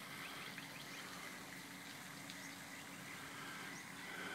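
Faint outdoor ambience with scattered short, high bird chirps over a steady low hum.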